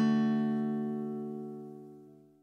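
The last strummed chord of an acoustic guitar ringing out and fading steadily away, the close of the song.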